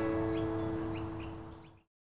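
The last strummed chord of acoustic guitar background music ringing out and fading, then stopping about two seconds in. A few faint short rising chirps are heard over it.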